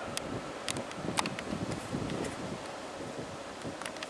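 Wind buffeting the microphone in a steady rush, with a few brief sharp ticks scattered through it.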